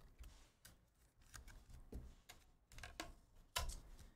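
Faint, scattered ticks and rustles of trading cards being handled, with a slightly louder tap near the end as a card is laid down on the mat.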